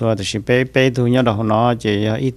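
Only speech: a man talking steadily into a close microphone.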